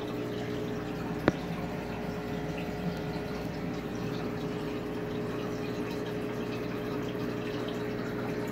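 Aquarium filter pump humming steadily with moving water, a constant mechanical drone with a faint watery hiss. A single sharp click about a second in.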